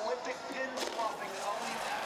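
Faint singing by a snowboarder at the top of the half-pipe, in short broken phrases over a low background hum of the venue.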